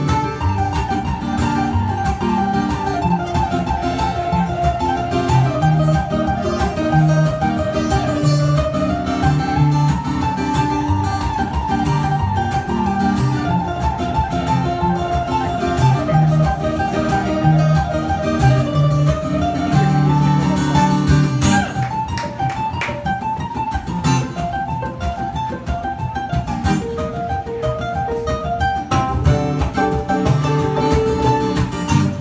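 Ukulele and acoustic guitar playing an instrumental duet live: a high melody of quick repeated plucked notes runs over lower chords and bass, its pattern changing about two-thirds of the way through.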